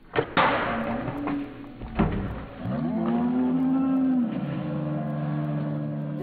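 Slowed-down audio of a slow-motion replay. A smeared thump comes just after the start and another at about two seconds. Then from about halfway, deep drawn-out groaning voices slide slowly down in pitch: the shouted reactions, stretched until they sound like lowing.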